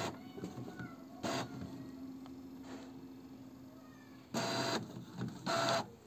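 Epson ink-tank inkjet printer running a photocopy job: a low steady hum with a few soft clicks, then two short, louder mechanical whirring bursts, a little over four seconds in and again near the end.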